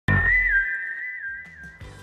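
Television show intro jingle: a whistled tune hopping back and forth between two high notes over a deep bass note at the start. The tune fades away shortly before the end.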